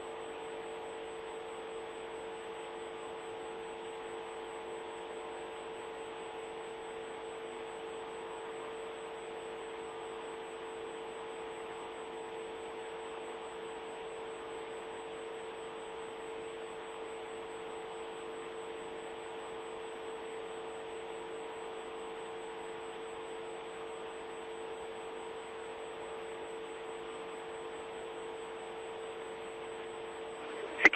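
A steady electrical hum on a broadcast audio line: one strong constant tone with fainter tones around it, over a band of hiss, unchanging throughout.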